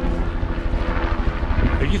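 A helicopter flying over, a steady engine and rotor drone, over a low rumble of wind on the microphone.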